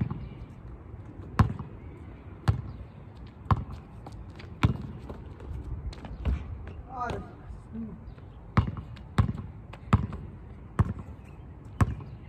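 A basketball bouncing on asphalt: about eleven sharp bounces at uneven intervals, spaced more closely in the last few seconds. A brief wavering voice comes about seven seconds in.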